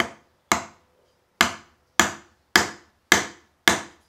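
The butt end of a curly teak hammer handle, with the Japanese hammer head on top, knocked down onto a wooden workbench seven times, making sharp wooden knocks about half a second apart. Each knock drives the head further onto the handle to seat it.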